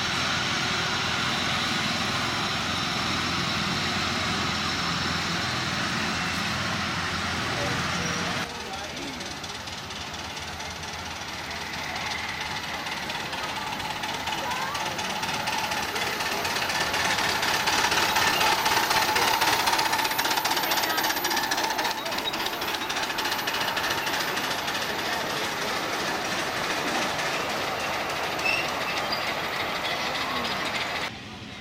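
Ride-on miniature railway locomotive hauling passengers along the track, with a continuous mechanical running and clatter. The sound changes abruptly about eight seconds in, then grows louder as a train comes close, loudest a little after the middle.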